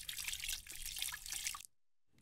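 Water running from a tap and splashing into a sink, then cut off abruptly about a second and a half in.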